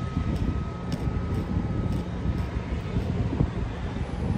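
Steady low rumble of wind buffeting the microphone, mixed with car traffic.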